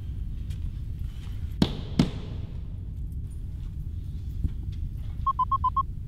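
Two sharp knocks, about half a second apart, over a steady low rumble, then a quick run of five short, high beeps near the end.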